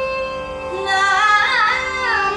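A woman's voice singing a Carnatic alapana in raga Todi: she holds a steady note for about a second, then moves into wavy, oscillating ornaments (gamakas), rising and falling in pitch, over a steady drone.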